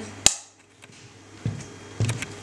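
Film clapperboard (slate) snapped shut once: a single sharp clap about a quarter second in, marking the start of the take for sound sync.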